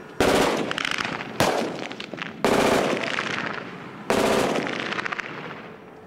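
Automatic gunfire in four loud bursts about a second apart, each starting suddenly, made of rapid shots and trailing off, with the last burst fading out near the end.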